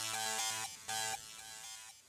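A Serum software synthesizer note dies away just after playback stops. The pitched tail fades steadily, with one softer echo of the note about a second in.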